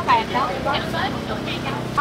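Busy street ambience: people's voices early on, then the steady hum of a motorbike engine running close by through the second half.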